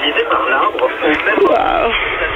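Only speech: voices over a telephone line, thin and cut off at the top like a phone call.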